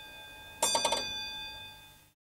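Bright, bell-like chime tones ringing on. A quick flurry of struck notes comes about half a second in, then rings out and fades away.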